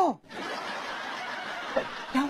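Low, steady background of soft laughter from a group of people, following a man's voice that breaks off right at the start.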